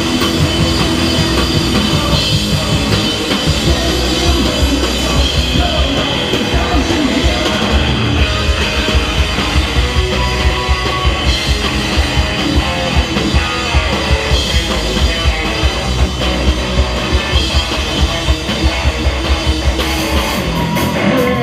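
Live rock band playing loud on stage: electric guitars and a Pearl drum kit. The drum hits stand out more sharply in the second half.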